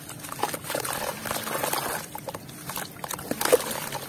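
Hands squeezing and crumbling a wet lump of sand-cement mix over a tub of water, with squelching, crackling crumbs and water dripping and splashing in irregular bursts. A sharper splash about three and a half seconds in, as the lump breaks apart into the water.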